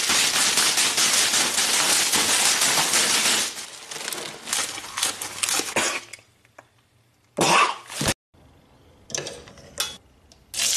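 Leafy salad greens being violently churned and mashed, a loud crackling, rustling racket that thins into scattered crunches after about three and a half seconds and dies away. A short loud burst comes a little past seven seconds, with a smaller one near the end.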